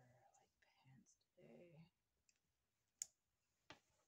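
A few faint, half-whispered words, then two sharp clicks about three seconds in, the second a little under a second after the first.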